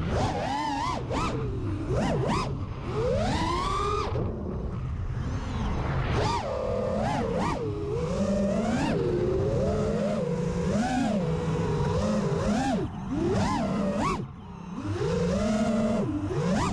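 The brushless motors and three-blade propellers of a 5-inch FPV freestyle quadcopter whining as heard from its onboard camera. The pitch climbs and falls sharply and often with throttle punches and chops, and dips briefly about 14 seconds in.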